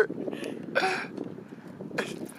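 A man's short laugh-like vocal burst, over steady wind noise on the microphone.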